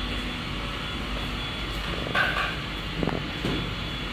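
Steady factory-floor background hum and rumble, with a brief higher-pitched sound about two seconds in and a short knock about a second later.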